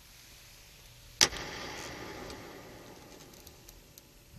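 A single sharp slam against a grand piano about a second in, followed by a ringing wash from the piano that fades over about two seconds.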